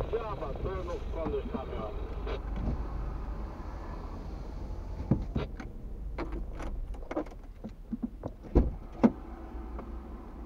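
Low steady rumble of a car idling, heard inside the cabin of the stopped car. A voice talks over the first couple of seconds, and several sharp clicks and knocks come in the second half, the loudest two near the end.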